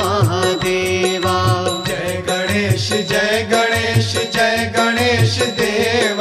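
Hindi devotional aarti to Ganesh: voices singing the refrain over a steady drum beat of about two strokes a second, with melodic accompaniment.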